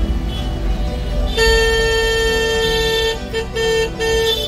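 A vehicle horn honking on a busy market street: one long blast of nearly two seconds starting about a second and a half in, then a few short toots near the end, over background music.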